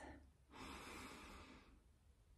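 A woman's soft, slow breath in, one airy breath lasting about a second, taken as part of a guided deep-breathing exercise.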